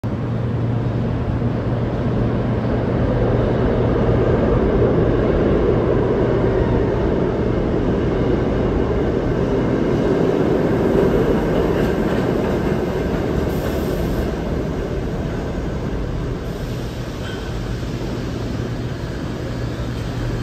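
R68A subway train running into the station: a rumble of wheels on rail that builds over the first few seconds, stays strong to about halfway, then eases off as the train slows, over a steady low hum.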